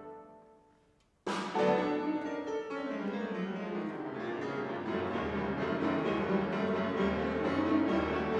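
A held brass chord dies away to near silence, then two grand pianos come in with a sudden loud chord about a second in and play on busily, with the wind band softly underneath.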